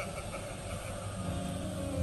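Soft background music under a pause in preaching: low, held keyboard chords over a steady low hum, growing a little fuller about halfway through.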